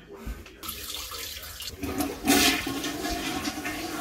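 Toilet flushing: rushing water starts about half a second in, surges loudly about two seconds in, then keeps running steadily.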